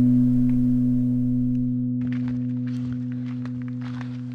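Singing bowl ringing on after a strike, a low steady hum that slowly fades. From about halfway, faint scattered clicks come in underneath.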